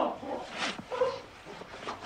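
A person's soft, short whimpering sounds, several in quick succession.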